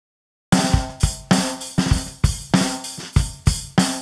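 Rock drum kit playing a steady beat of kick, snare, hi-hat and cymbal hits, about four strokes a second. It starts abruptly about half a second in, opening a rock song.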